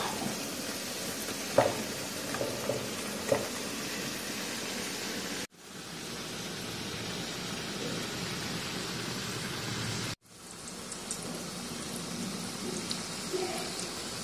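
Sweet banana-and-flour fritters frying in shallow oil in a pan, a steady sizzle with a few light knocks in the first few seconds. The sizzle cuts off abruptly and restarts twice.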